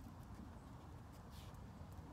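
Quiet outdoor background: a steady low rumble with a few faint ticks and a brief soft hiss about a second and a half in.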